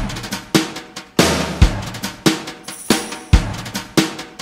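Rock drum kit playing a steady beat of kick and snare hits with cymbal wash, a little under two hits a second, as the intro of a song before any singing.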